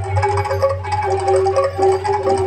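Live jaranan campursari music: a wind instrument holds a steady melody line over percussion and a constant low drone.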